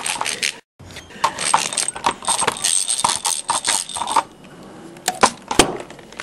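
Hand-cranked rotary egg beater whisking raw egg in a drinking glass: rapid clicking and rattling of its gears and beaters against the glass for about three seconds, then a couple of sharp knocks near the end.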